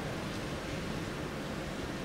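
Concert-hall room tone before a piano performance: a steady, low, even background noise with no music yet.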